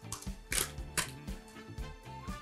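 Plastic packaging of a block of kefalotyri cheese being peeled open: two short crackles about half a second and a second in, with a few smaller rustles, over background music.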